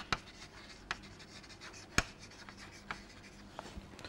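Chalk writing on a blackboard: faint scratching with a few sharp taps, the loudest about two seconds in.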